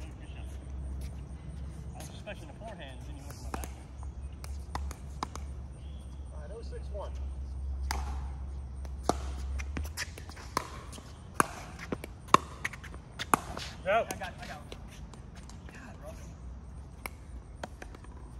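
Pickleball paddles striking the hollow plastic ball in a rally: a run of sharp pocks, the loudest about a second apart in the second half, with brief voices from the players between shots.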